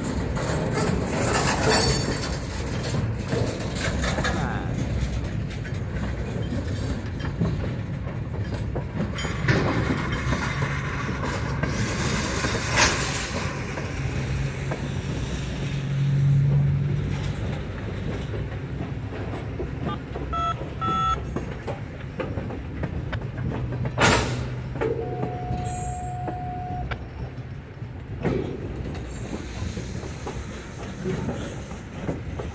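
Freight cars of a long freight train rolling past close by: steady rumble and rail noise, with sharp clanks around the middle and later on. A brief wheel squeal comes near the end.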